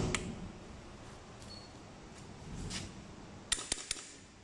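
Industrial tape-binding sewing machine being switched on: a switch click at the start, a brief faint high beep about a second and a half in, and a quick run of four sharp clicks near the end.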